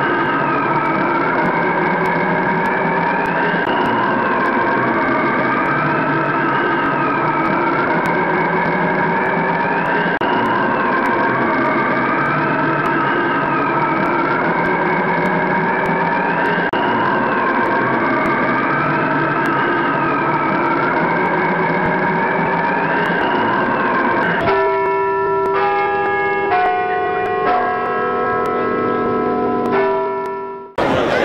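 Intro soundtrack: a siren wailing, its pitch rising and falling about every three seconds, then about five seconds of bell-like chime notes stepping through a short run of pitches near the end.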